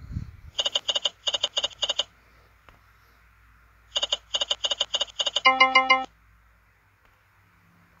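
Online slot game sound effects: two runs of short, quickly repeated electronic beeps as the reels spin and stop, the second run ending in a brief held chime. A soft low bump comes right at the start.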